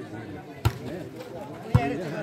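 A volleyball struck twice, about a second apart, with sharp slaps of hands on the ball; the second hit is the louder. Spectators' voices carry on underneath.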